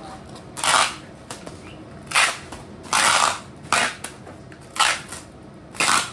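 Packing tape pulled off a handheld tape-gun dispenser in short strips: six sharp rasping rips about a second apart, the one near three seconds longer than the rest.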